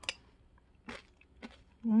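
Crisp crunching as someone chews brown-rice nurungji (scorched-rice crisps) eaten like cereal in milk. There are three sharp crunches: one right at the start, one about a second in and one shortly after.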